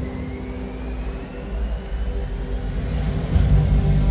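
Concert PA sound system playing a building intro: a deep bass rumble swelling in loudness, stepping up about three seconds in, with a faint high tone slowly rising in pitch above it.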